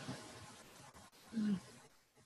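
Faint call-line hiss fading away, with one brief voiced murmur like an 'mm' from a person about a second and a half in.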